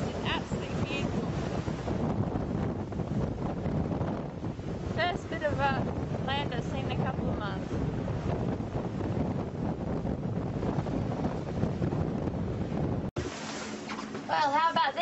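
Strong wind buffeting the microphone, with the rush of a rough sea around a sailing yacht, heard from on deck. A brief, indistinct voice comes through about five to seven seconds in. The rushing cuts off suddenly shortly before the end.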